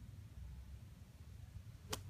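Golf club striking the sand and ball in a bunker shot: a single short, sharp hit near the end.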